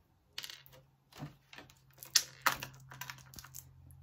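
Plastic toy accessories being handled and pulled out of their plastic packaging: a run of light, irregular clicks and crinkles, over a low steady hum.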